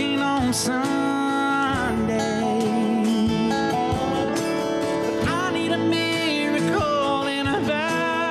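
Live country-style acoustic band performance: a male lead singer with acoustic guitar, steel guitar, keyboard and cajón accompaniment.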